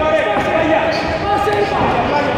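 Several voices shouting over one another, echoing in a large hall, with dull thuds of gloved punches and kicks landing in a kickboxing bout.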